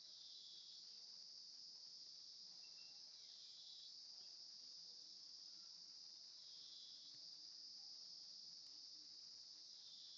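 Near silence, with only a faint steady high-pitched hiss.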